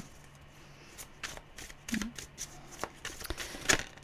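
Tarot cards being shuffled by hand, a run of irregular soft card slaps and flicks that is loudest near the end.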